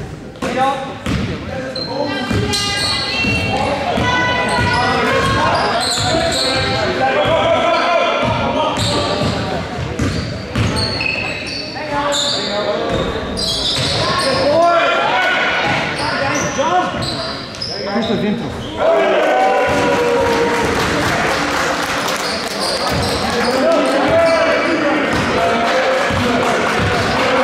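A basketball bouncing on a gym floor during play, with players and spectators talking and calling out. It echoes around a large gym.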